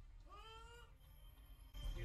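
A single short, faint pitched call, rising then falling, lasting about half a second, the kind of sound a cat's meow or a brief voice makes.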